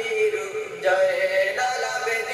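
A man singing a slow melody in long held notes, with no beat.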